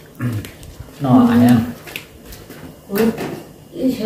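People talking in short phrases, with a few light clicks between them.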